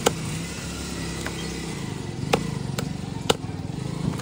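Machete blade chopping through an eel into a wooden chopping stump. There is one sharp chop at the start, then after a pause three more chops about half a second apart. A steady low engine-like hum runs underneath.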